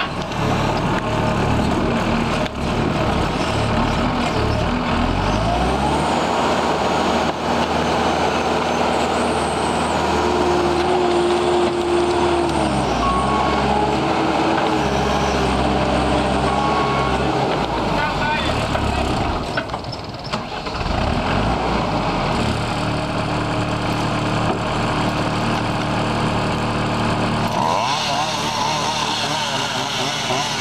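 New Holland L225 skid steer loader's diesel engine running hard under load as it pulls a tree stump, its pitch rising about five seconds in and dropping briefly near twenty seconds before picking up again.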